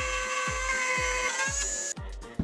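A power tool cutting a plexiglass sheet, running with a steady high-pitched whine whose pitch rises slightly near the end before it cuts off. Background music with a steady beat plays underneath.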